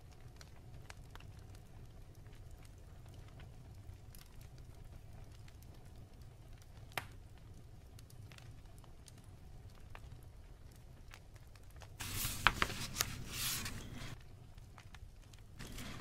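Faint room hum, then about twelve seconds in a book page is turned: a paper rustle with a few crackles lasting about two seconds.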